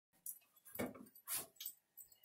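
A puppy tugging at a hanging strip of toilet paper: four short noisy bursts in under two seconds, the two loudest near the middle.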